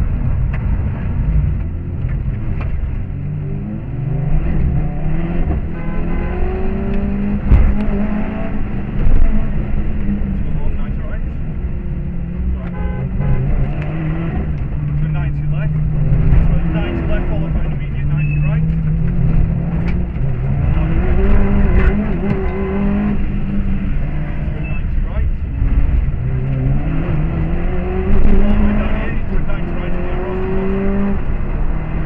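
Subaru Impreza rally car's flat-four boxer engine heard from inside the cabin, revving hard and dropping back again and again through gear changes and corners, over steady road and tyre noise. A few louder knocks stand out, about eight and nine seconds in and again near the end.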